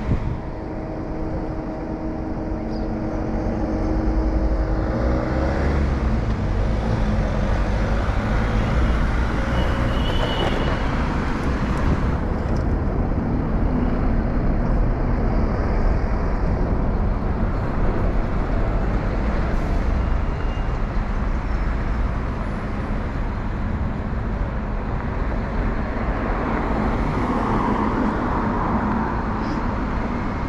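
City street traffic: cars and a city bus passing, a steady rumble of engines and tyres that grows louder about four seconds in.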